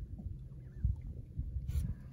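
Low rumble of wind and choppy water around a small boat, with a few soft knocks and a short hiss near the end.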